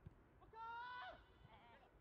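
A single loud, high-pitched shout from a football player, held steady for about half a second near the middle, after a brief knock just at the start; faint distant voices around it.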